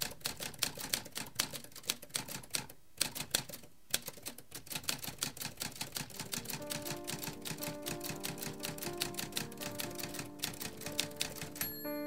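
Rapid keystrokes on a manual typewriter, a quick run of sharp clacks with a couple of brief pauses. About six seconds in, soft music with sustained notes comes in under the typing.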